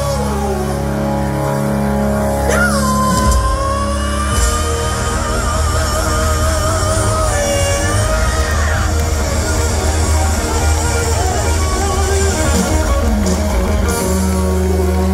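A live hard-rock band playing loud through a stadium PA, recorded from the crowd: distorted electric guitars, bass and drums. A long high note held with vibrato runs from about two and a half to nine seconds in.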